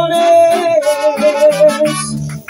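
Mariachi band playing, with a trumpet holding one long note over the accompaniment, which fades near the end.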